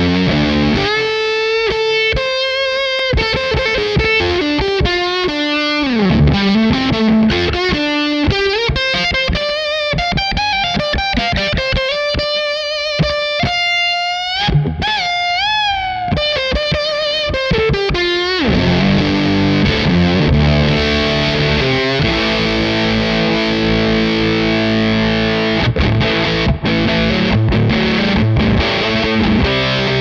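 Humbucker-equipped Gibson Les Paul electric guitar played through a Crazy Tube Circuits Motherload distortion/fuzz pedal. It plays single-note lead lines with string bends and vibrato, then switches to thick sustained distorted chords and riffing a little past halfway.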